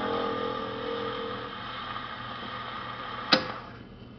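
The last note of a 78 rpm record dies away on an acoustic Columbia Viva-Tonal phonograph, leaving the fading hiss of the disc's surface noise, then one sharp click near the end.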